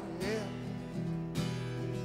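Acoustic guitar strummed chords ringing between sung lines, with fresh strums about a second and about a second and a half in. A male voice briefly sings one word at the start.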